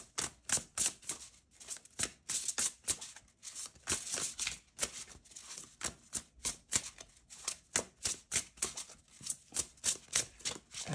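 Lumina Tarot deck being shuffled by hand: a run of crisp card slaps and clicks, about three a second.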